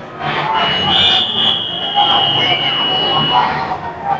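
A high, steady electronic buzzer tone held for about three seconds, over the chatter of the crowd in the hall.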